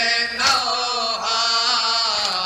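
A group of men chanting an Urdu noha: a lead reciter sings into a microphone and the others join in. About half a second in there is one sharp thump of matam, hands beating on chests.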